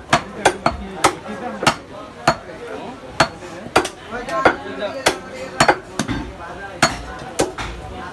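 Heavy butcher's cleaver chopping goat meat on a wooden stump chopping block: about fifteen sharp strikes at an uneven pace, roughly two a second, with voices in the background.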